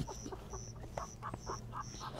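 A woman laughing hard and nearly silently, in quick short breathy bursts, about five a second.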